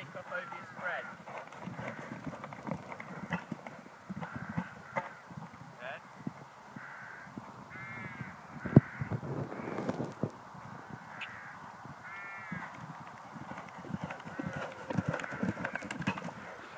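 Horse's hoofbeats on the sand arena surface, with crows cawing twice, about eight and twelve seconds in. A single sharp knock stands out a little before nine seconds.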